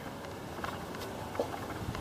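Low, steady background noise with a couple of faint, short clicks.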